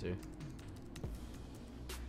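Computer keyboard keys clicking: a handful of scattered keystrokes, with one sharper click near the end.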